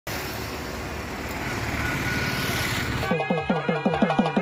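Steady road traffic noise that grows slightly louder, cut off about three seconds in by traditional music with fast drumming at about six beats a second.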